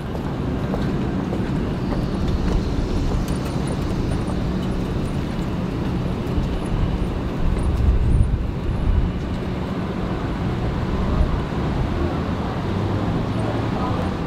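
Street traffic noise: a steady low rumble of car engines, swelling slightly about eight seconds in.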